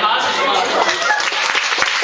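Audience clapping that builds up about a second in, with a voice heard at the start.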